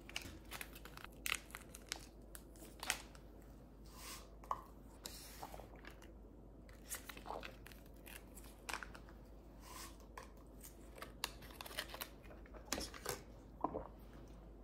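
A plastic stick sachet being crinkled and torn open by hand, with scattered small clicks and rustles.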